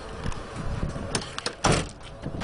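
Garbage truck cab door being handled: a couple of clicks, then a loud slam as the door shuts a little over a second and a half in, over a low rumble.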